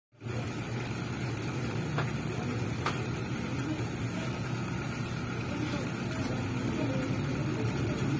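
Food frying in a large pan on a gas stove, a steady sizzle over a low rumble, with two light clicks about two and three seconds in.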